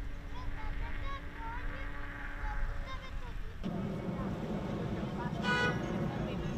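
Outdoor waterfront ambience: scattered short chirp-like calls over a steady low hum, then about three and a half seconds in a sudden change to a louder, denser low rumble. One short harsh call comes near the end.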